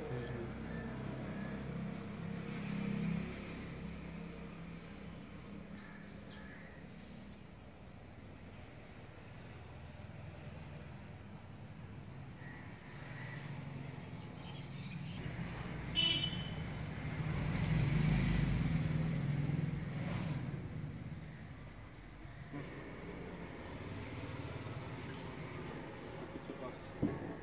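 Road traffic rumbling steadily, with one vehicle swelling louder and passing about two-thirds of the way through. Short high bird chirps come and go over it, and there is one brief sharp sound just before the vehicle passes.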